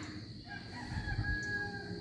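A rooster crowing faintly, one long call starting about half a second in and lasting over a second.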